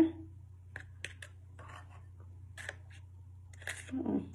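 Metal spoon scooping flour in a bowl and tapping against a plastic bottle-top funnel: a scattering of light scrapes and clicks over a low steady hum.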